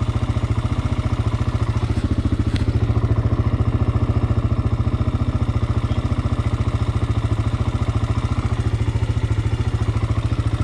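A Honda TRX400X sport quad's single-cylinder four-stroke engine idling steadily, with an even, quick beat of roughly a dozen pulses a second that swells slightly about three seconds in.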